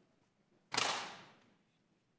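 A single sharp bang or knock about three-quarters of a second in, fading away over about half a second against faint room tone.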